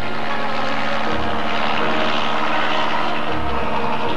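Cartoon fly-by sound effect of a small propeller craft buzzing past, building to its loudest about halfway through and then fading. Music plays underneath.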